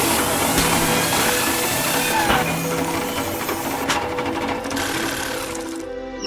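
Segment title sting: music with a fast, dense mechanical rattle over held tones and a couple of sharp clicks, cutting off abruptly just before the end.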